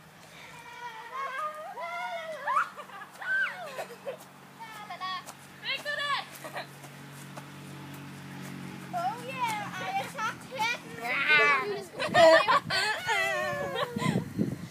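Girls' voices talking and calling out, not as clear words, growing louder and busier near the end.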